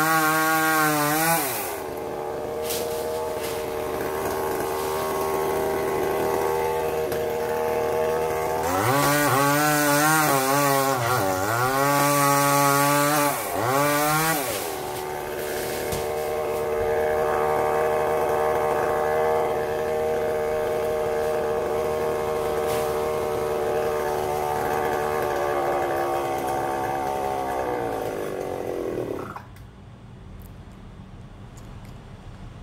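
Chainsaw cutting through a palm trunk. Its engine pitch sags and recovers under load at the start and again in a longer stretch of cutting, then holds steady for about fifteen seconds before cutting off near the end.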